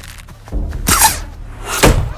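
Arrows shot from a bow striking a straw archery target: two sharp thwacks, one about a second in and a louder one near the end.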